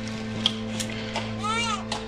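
A newborn baby starts crying about one and a half seconds in, in short wails that rise and fall in pitch, over a steady low musical drone. These are the first cries of a newborn who has just been ventilated after being born limp: the baby is breathing.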